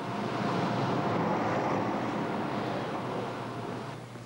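A bus passing along a street: its engine and tyre noise swell to a peak and then fade.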